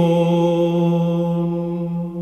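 A male Byzantine chanter holding the final note of an apolytikion in the plagal first mode. One long, steady sung tone slowly fades toward the close of the hymn.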